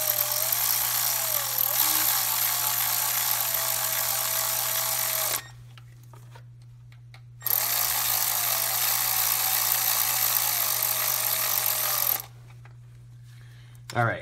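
Cordless ratchet running bolts down on a timing chain tensioner, in two long runs of steady motor whine about five seconds each with a short pause between, snugging the bolts down.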